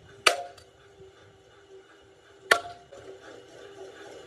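Two hard sledgehammer blows on a scrap cast-iron engine block, about two seconds apart, each with a short metallic ring: the block being broken up for remelting.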